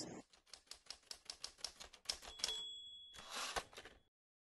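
Creality Ender 3D printer running a print, faint: rapid, even clicking from the moving print head and stepper motors, a brief high whine, then a short burst of noise before the sound cuts off.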